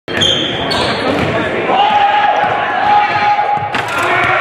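Game sound in a basketball gym: a basketball dribbling on the hardwood court under echoing crowd noise and voices. A steady tone is held for about two seconds in the middle.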